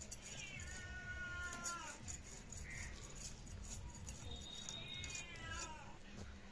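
Domestic cat meowing twice: a long call with a falling pitch at the start and another near the end.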